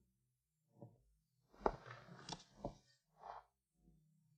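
Quiet handling sounds: a cluster of a few sharp knocks with rustling in the middle, and a softer rustle near the end.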